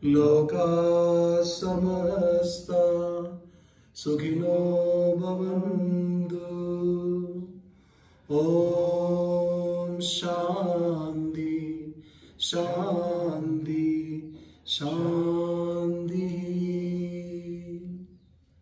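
A man's voice chanting a mantra in five long, held phrases, with a short breath between each.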